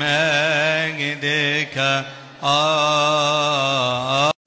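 A male voice chanting a Coptic liturgical hymn, drawing out long wavering melismatic notes with a short breath pause about halfway through.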